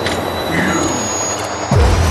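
Electronic bass-music mix in a noisy build-up, with a brief high steady tone in the middle; a heavy bass comes in suddenly near the end.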